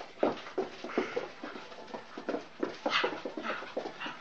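A dog spinning round after her own tail, making short, excited whimpering sounds in quick, irregular succession.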